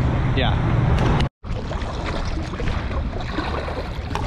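Roadside traffic noise with a short spoken 'yeah', then an abrupt cut about a second and a half in to water sloshing and splashing around legs wading through a shallow river.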